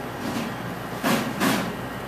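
Handling noise from hands turning a small bird skin right side out: three short rustles over a steady room hum.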